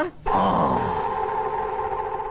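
A steady held tone made of several level pitches starts about a quarter second in, after a brief drop in sound, and holds through the rest; a lower pitch underneath fades out within the first second.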